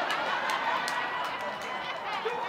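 Comedy club audience laughing and murmuring, with a few scattered hand claps, in reaction to a punchline.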